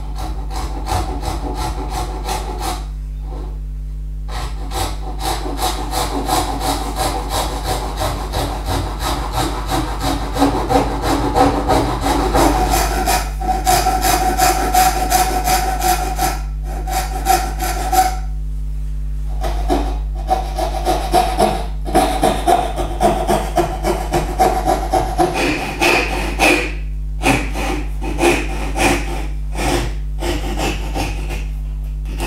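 Thin-kerf Japanese hand saw cutting down the sides of finger (box) joints in a board held in a vise: quick, even back-and-forth strokes, with several brief pauses between cuts.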